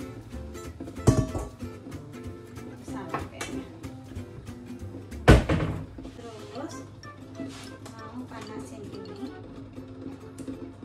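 Background music throughout, with two sharp thuds, one about a second in and a louder one just past five seconds. They are kitchen handling sounds, and the louder one is a stainless steel frying pan being set down on a glass cooktop.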